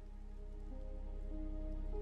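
Soft, slow background music of held notes whose pitches shift gently, swelling slightly, over a light steady rain sound.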